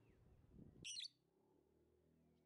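A lovebird giving one short, sharp, high chirp about a second in.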